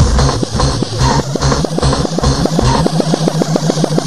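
Rave DJ-mix music at a breakdown: the deep bass and kick drop away, leaving a quickening run of sharp drum hits that reaches about eight a second.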